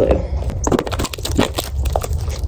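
Plastic wrapper of a Flex Tape roll crinkling and crackling as it is cut and torn open with scissors, in a few sharp crackles over a steady low hum.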